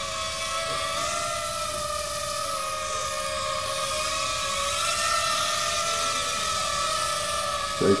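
Small remote-control quadcopter's motors and propellers whining steadily in flight, the pitch wavering slightly up and down as the throttle changes.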